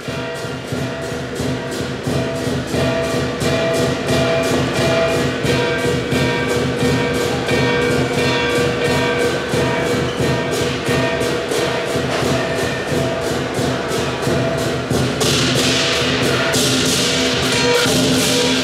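Live southern lion dance percussion: a large lion drum beating a fast, steady rhythm with clashing cymbals and a ringing gong, which accompany a lion performing on high poles. The cymbals get louder and brighter near the end.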